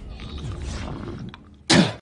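Film soundtrack with a low rumble, ending near the close in one short, loud, rough vocal burst.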